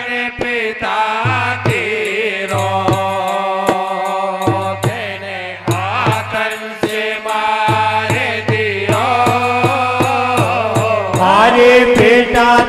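Live Rajasthani Hari Kirtan folk music: sustained harmonium-like chords over an even hand-drum beat, with a man's sung line coming back in and getting louder near the end.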